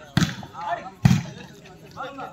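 A volleyball struck hard by hand twice, a little under a second apart, each hit a sharp slap. Players and spectators shout in between.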